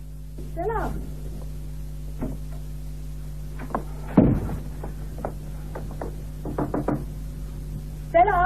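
Radio-drama sound effects over a steady low hum: scattered knocks and one loud, heavy thump about four seconds in, then a quick cluster of knocks near the end. A brief sound from a voice comes just before the first second.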